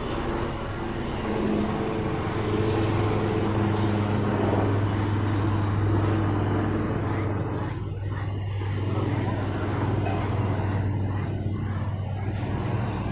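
A steady low motor drone, like a vehicle engine running nearby, swelling for the first half and then easing somewhat.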